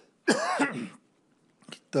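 A man coughs once, a single rough burst of about half a second near the start, and the pitch of the cough falls as it ends.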